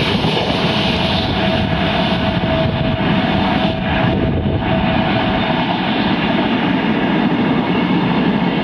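Train wheels rolling over the rails past the platform: a loud, steady rumble that does not let up, with a faint steady whine through the first half.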